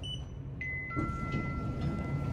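Lift arrival chime: two held electronic tones, a higher note then a lower one about a third of a second later, both ringing for about a second over a low steady hum.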